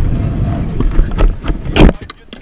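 Stunt scooter's wheels rolling at speed over the concrete of a skatepark bowl: a loud, rough rumble with scattered clicks, and a sharper, louder burst near the end.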